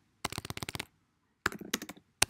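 Typing on a computer keyboard: two quick runs of keystrokes, the first just after the start and the second about a second and a half in.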